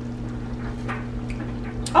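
Steady low hum over the faint simmer of a creamy pasta sauce in a cast-iron skillet, with a couple of soft ticks.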